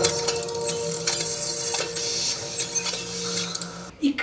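Sci-fi film soundtrack: a low sustained music tone fading away, with short mechanical clicks and whirs on top.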